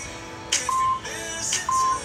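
Interval workout timer giving short, steady countdown beeps once a second, marking the last seconds of a 20-second Tabata work interval, over background music.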